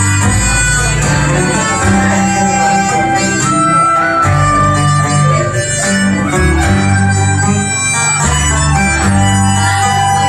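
Live Irish traditional music: tin whistle, tenor banjo and button accordion playing a tune together at a steady, unbroken pace, with pulsing bass notes underneath.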